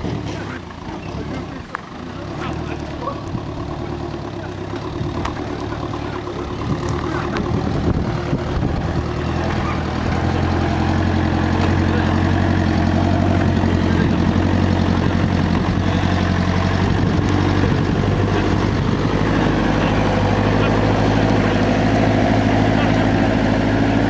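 Land Rover Series 4x4's engine running as it drives over a dirt off-road track, a low steady engine note that grows louder and fuller about ten seconds in as the vehicle comes up close.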